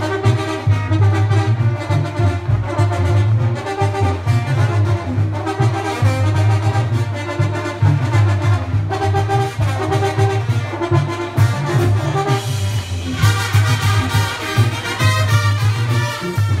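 Upbeat Latin dance music with brass horns over a steady, pulsing bass beat, growing brighter and fuller about thirteen seconds in.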